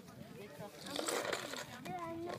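Background voices of people talking, with no clear words, and a brief burst of hissy noise about a second in.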